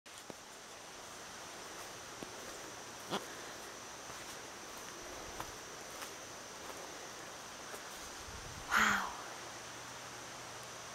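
Quiet woodland ambience: a steady faint hiss with a thin, steady high-pitched tone, and light, irregular footsteps on a dirt trail. About nine seconds in comes one short, louder sound, the loudest moment.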